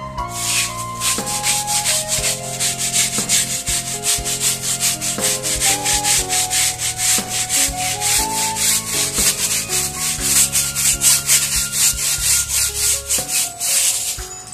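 Small hand scrub brush scrubbing a wet, soapy rubber tyre sidewall to clean off mud, in quick back-and-forth scratchy strokes, about four a second, starting about half a second in.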